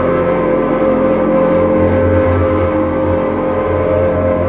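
Droning live music from a slide-played lap steel guitar and an electric guitar: one long sustained note held steady over a dense, ringing wash of overtones and a low hum.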